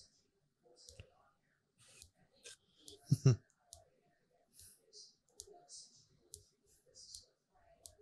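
Quiet, scattered short clicks and hisses, with one brief low voice-like sound about three seconds in.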